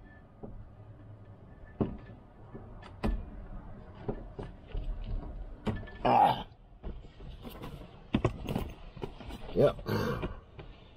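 Scattered knocks and bumps as parts of a wheelchair are stowed on a car's passenger seat and a man shifts his weight in the driver's seat, with a couple of short strained grunts, the loudest about six seconds in.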